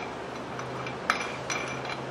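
Two light metallic clinks, about a second in and again half a second later, as a nylock nut is fitted by hand onto a mower caster wheel's axle bolt, over a steady low hum.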